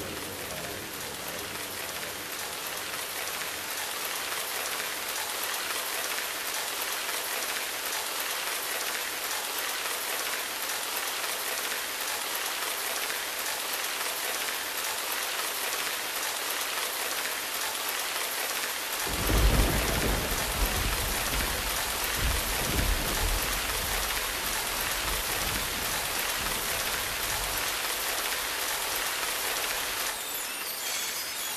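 Steady rain with an even hiss. About two-thirds of the way through a low roll of thunder comes in suddenly, swells a few times and fades back under the rain.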